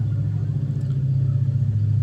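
A loud, steady low rumble that holds unchanged, with nothing else standing out over it.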